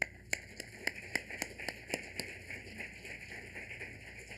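Audience applauding. There are a few loud, separate claps in the first two seconds, then a softer, denser patter of clapping.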